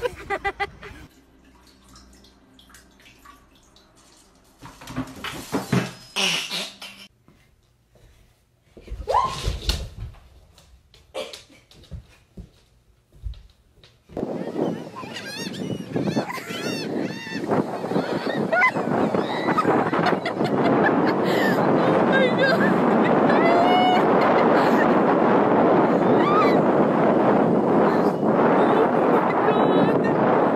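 Gulls calling over a steady rushing of surf and wind on a beach, starting about halfway in and growing louder; before that, only short scattered sounds.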